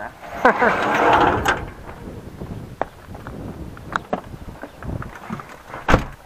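A short burst of laughter about a second in, then a few faint, scattered clicks and knocks, the sharpest just before the end.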